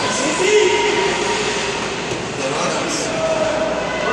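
Echoing ice-rink noise during a youth hockey game: skates scraping on the ice under a steady hall roar, with distant shouting voices.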